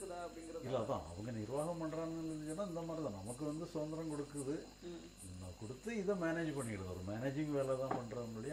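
A man's voice, with long drawn-out sounds that glide up and down in pitch and a short lull around the middle. Faint high chirping repeats about twice a second behind it.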